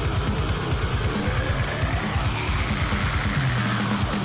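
Metalcore song playing: distorted electric guitars over fast, steady drumming.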